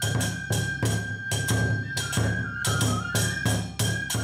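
Onikenbai dance accompaniment: a flute playing long held notes over a drum beat and hand cymbals clashing about four times a second.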